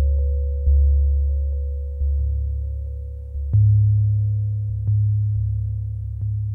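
Minimal electronic ambient music. A deep sine-tone bass pulse strikes about every second and a half and fades away between strikes, under a steady, quieter high tone held throughout.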